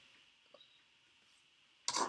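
Near silence: room tone, with one faint short tick about half a second in.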